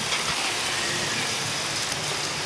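Steady rush of the ride's river water around the raft, a constant hiss and wash.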